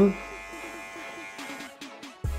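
Dingling cordless hair clipper buzzing as it cuts and blends the short hair at the back of the head, fading out near the end, with music in the background.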